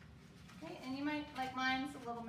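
A woman's voice holding a drawn-out vocal sound at a steady pitch, with no clear words, for most of the second half.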